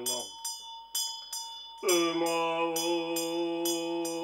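Tibetan hand bell rung steadily, about two rings a second, under a man's low, sustained mantra chant. The chant breaks off just after the start and comes back a little before halfway on a higher held note.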